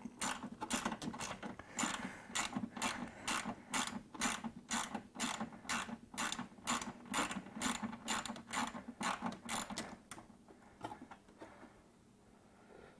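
Hand ratchet wrench clicking steadily, about three clicks a second, as a small ground bolt in the engine bay is backed out by hand. The clicking stops about ten seconds in.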